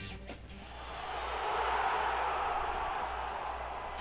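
Start of a sports radio show's recorded opening: a crowd-like wash of noise swells up over the first second or two and then holds steady, with no voice over it yet.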